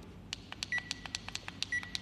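A small electronic device clicking and beeping: quick, uneven ticks, about six a second, with a short high beep about once a second.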